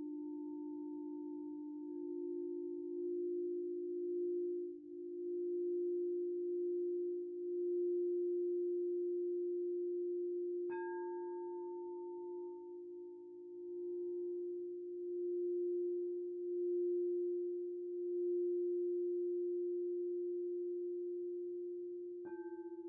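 Singing bowls sounding a steady low hum that slowly swells and fades. About eleven seconds in, a bowl is struck and adds a brighter ringing tone that dies away over a couple of seconds.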